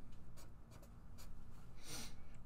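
Pen writing a number on paper, a few short strokes.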